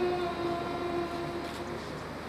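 Girls singing together in unison, holding one long note that fades out about a second and a half in, leaving a short lull.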